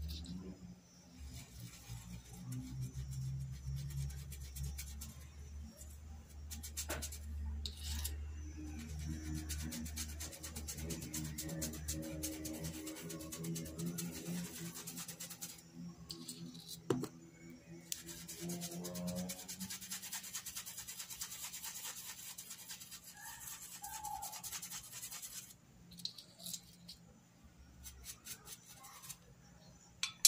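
A paintbrush scrubbing fabric paint into cloth in quick rubbing strokes, over a steady low hum that stops a few seconds before the end.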